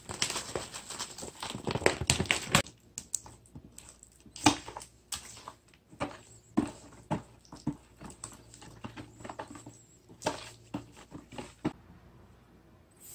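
Coarse sea salt pouring from a bag into a plastic bowl, a grainy hiss for about the first two and a half seconds. Then a wooden spatula stirs thick gochujang paste, with irregular knocks and scrapes against the plastic bowl.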